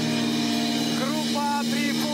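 A rock band's final chord held and ringing out on electric guitars and keyboard after the drums have stopped. A man's voice speaks over it from about a second in.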